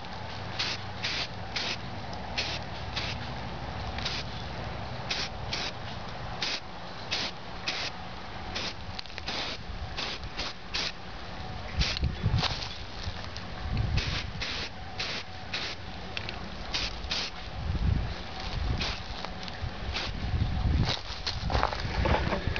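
An aerosol can of Rust-Oleum primer hissing in many short spray bursts, roughly one a second, as the primer coat goes on. A few low thumps fall between the bursts.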